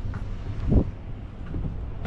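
Wind buffeting the microphone as a low, steady rumble, with one brief thump a little under a second in.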